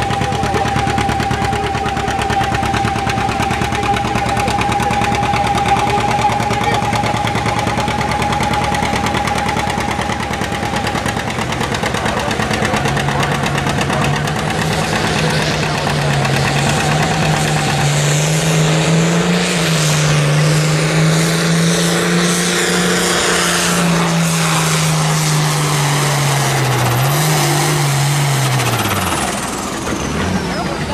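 John Deere two-cylinder tractor engine popping hard under full load while pulling a weight-transfer sled, with a steady high whine over it. About halfway through the popping gives way to a smoother, lower engine note that wavers and then falls in pitch near the end.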